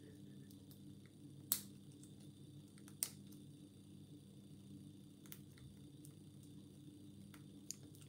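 Faint, sparse metallic clicks of a hook pick working the pin stack of a PREFER container padlock held under tension: two sharper clicks about a second and a half and three seconds in, and a few fainter ticks later, over a low steady hum.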